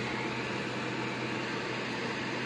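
Electric fan running steadily: an even whooshing of moving air with a low steady hum beneath it.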